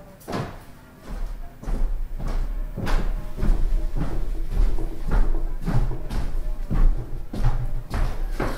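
Irregular knocks and handling clatter, roughly two a second, over a low rumble that starts about a second in.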